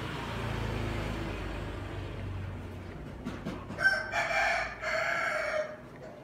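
A bird's drawn-out crowing call lasting about two seconds, starting past the halfway point and the loudest sound here, after a low rumble.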